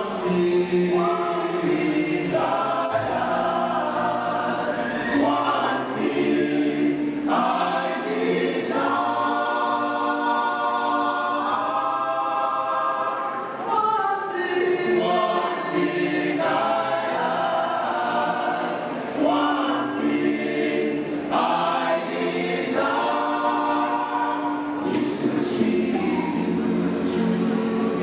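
Men's choir singing a gospel song in close harmony, unaccompanied, in sustained chords phrased every couple of seconds, with a lead voice on a handheld microphone.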